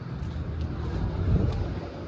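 Low, uneven rumble of wind buffeting the microphone, swelling in the middle and easing off toward the end.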